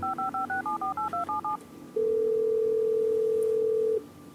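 Touch-tone telephone being dialed: a quick run of about eleven two-note key beeps, then a single two-second burst of ringback tone as the call rings through, starting about two seconds in.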